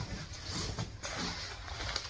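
Clothing and fabric rustling as garments are handled, one set aside and the next pulled out.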